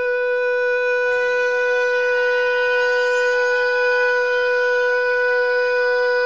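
A man singing one long held note on "you", scooping up into it and then holding a steady pitch. Soft instrumental backing joins under it about a second in.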